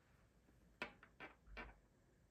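Wooden pencils lightly clacking against each other and the wooden tabletop as they are handled, three or four quick clacks about a second in.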